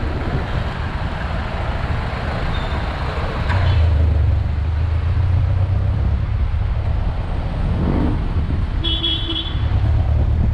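Jeepney engine running through city traffic with road noise, its low rumble growing louder about three and a half seconds in as it pulls away. A short horn toot sounds near the end.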